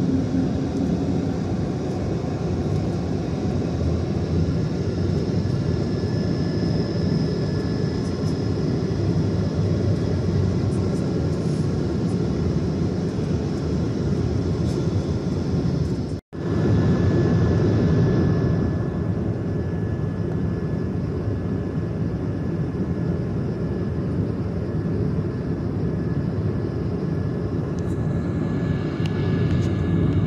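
Steady cabin noise of an airliner in flight, heard through the cabin: a dense, even rumble with a faint steady whine above it. The sound drops out for an instant a little past halfway.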